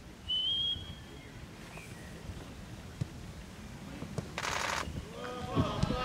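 A football is struck for a penalty kick, heard as a single sharp thud about three seconds in, after a brief high whistle-like tone near the start. A short rush of noise follows at about four and a half seconds, and then men's voices call out near the end.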